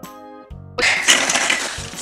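Tinkly background music, and about a second in a loud crackling rustle from hands working a slime-filled plastic toy capsule.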